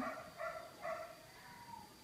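Two faint, short animal calls, about half a second apart, in a pause between voices.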